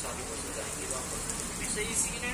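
Steady rain falling on paving, with faint voices in the background.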